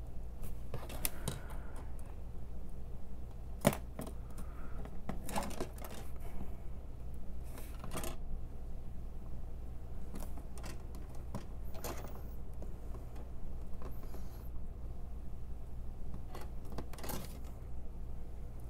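Metal tweezers clicking and scraping against small plastic model parts and a plastic model car body as headlight projector pieces are fitted: a scatter of light clicks, with one sharper click about four seconds in, over a steady low hum.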